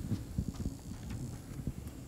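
Irregular low thumps, several a second, from a live handheld microphone being carried by a walking person: handling bumps and footfalls picked up through the mic.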